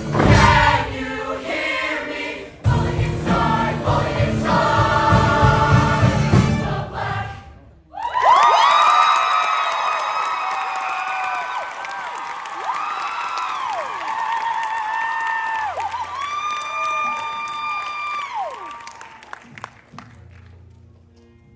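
Show choir singing over loud backing music that cuts off about seven seconds in; then the choir holds sustained chords unaccompanied, voices sliding up and down in pitch between held notes, fading out near the end.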